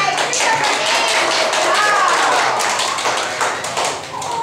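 A crowd of children clapping, irregular hand claps with voices calling out among them.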